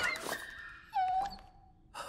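Cartoon giant puppy whimpering sadly: a high thin whine, then a longer, lower whine about a second in that fades away.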